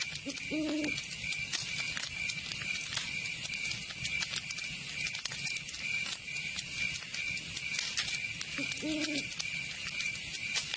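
Outro sound effect: a steady high hiss with many scattered crackling clicks, and two short low hoots, one about half a second in and one near the end.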